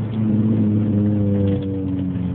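Honda Civic Type R FN2's four-cylinder engine and Martelius cat-back exhaust heard from inside the cabin, running at a steady pitch that drops slightly near the end.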